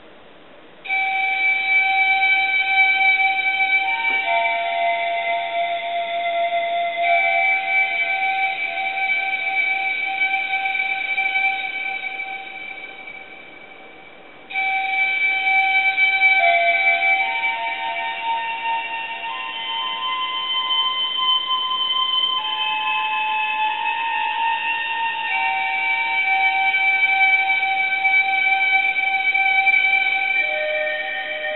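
Synthesized pan flute (a Nexus² preset) playing sustained notes and chords that change every few seconds. The first phrase starts about a second in and fades out; a second phrase comes in suddenly about halfway through.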